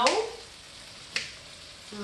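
A knife clicks once on a cutting board as a cucumber is sliced, about a second in, over a faint steady hiss.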